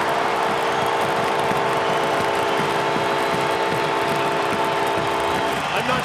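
Arena goal horn sounding one long steady blast for a home goal, over a loudly cheering crowd; the horn cuts off shortly before the end.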